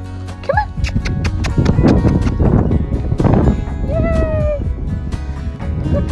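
Background music, over which a puppy gives three short, high-pitched whines: a brief one about half a second in, a longer one around the fourth second and another near the end.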